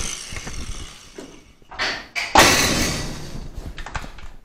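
Sheet-metal rocker panel being forced up by hand into line with the door after a relief cut along its seam: thumps and flexing steel, the loudest a sudden thud about two seconds in that rings on for about a second.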